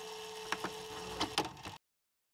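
A few light clicks and taps from fingertips pressing a vinyl skin down onto a laptop's palm rest, over a faint steady hum. The sound cuts off to silence shortly before the end.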